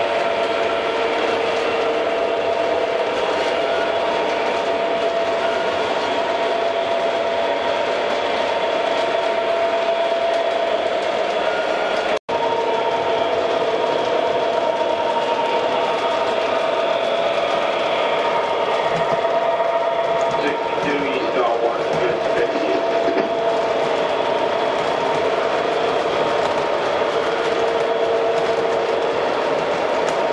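MTH O gauge model diesel locomotive running, its onboard diesel engine sound playing as a steady hum of several held tones, with the freight cars rolling on the track. The sound drops out for an instant about twelve seconds in.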